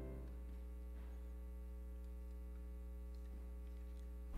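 Steady electrical mains hum in the audio feed. The tail of a held musical chord fades out in the first moment.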